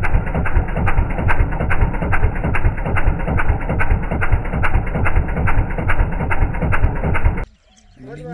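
Small stationary engine driving a farm irrigation water pump, running steadily with a rapid, even knock. It cuts off abruptly about seven and a half seconds in.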